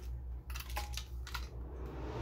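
A few light clicks and taps, scattered and irregular, in a quiet small room.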